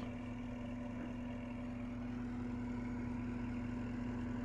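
Tractor fitted with a hazelnut husking machine, its engine idling with a faint, steady hum.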